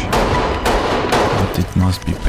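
Gunfire: about four sharp shots within two seconds, mixed with music and voices.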